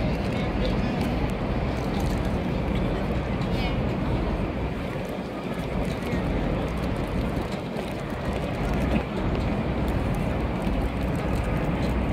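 Busy city street ambience: many people's voices mingling over steady traffic noise, with a constant low rumble.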